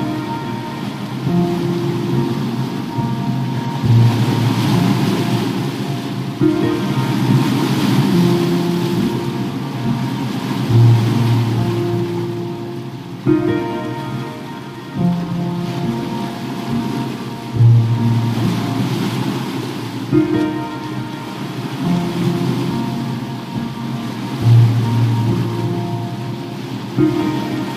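Slow, gentle solo piano music, a low bass note returning every six to seven seconds, laid over a bed of ocean waves that swell and recede and a crackling fireplace.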